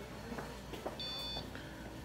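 A single short high-pitched electronic beep about a second in, over faint room noise with a few small handling clicks.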